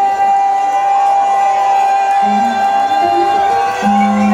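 Live hip-hop concert sound in a hall, with the beat dropped out. A single held tone with crowd noise beneath it runs through, and a lower held tone comes in about halfway.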